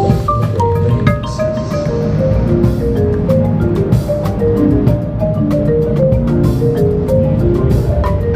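Marimba played with mallets at close range: a fast, continuous run of short wooden notes in the middle register, over a steady low sound from the rest of the ensemble.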